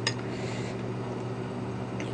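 Quiet room with a steady low electrical hum, and one faint click just after the start as metal chopsticks pick a piece of salmon sushi off the plate.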